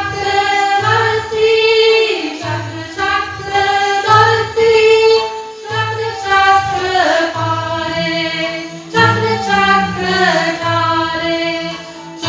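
Women's voices singing a mantra chant, accompanied by bowed dilrubas. Under them run a steady drone and a soft low beat about once a second.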